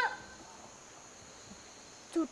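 Faint, steady chirring of crickets. A child's drawn-out high call cuts off right at the start.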